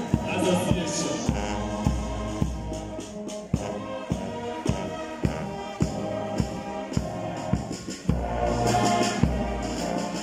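Band playing march music: sustained band notes over a steady drum beat of about two strokes a second.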